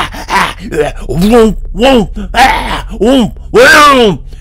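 A man's voice making a loud vocal sound effect, a string of "woomph" hoots, each rising and falling in pitch, about two a second, the last one drawn out. It imitates the fearsome panting, whooshing noise of a beast, likened to a steam locomotive pulling out.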